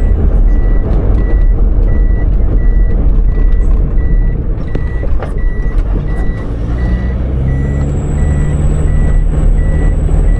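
Engine and road rumble inside a moving vehicle, with a short high electronic beep repeating about twice a second throughout. The engine note rises a little from about seven seconds in.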